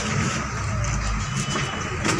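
Outdoor background noise: a steady low rumble of the kind that distant road traffic makes.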